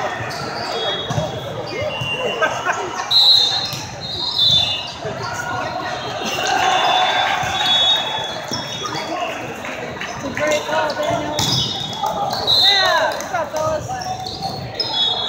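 Indoor volleyball play in a large echoing hall: a ball being struck and bouncing, sneakers squeaking on the sport court, and a constant mix of players' and spectators' voices. Loud shouts come near the end as the rally finishes.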